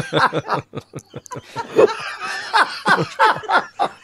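People laughing in short, broken bursts.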